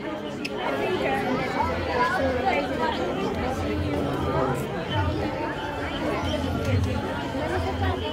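Crowd chatter: many people talking at once, overlapping voices with no single speaker standing out, over a low hum that comes and goes.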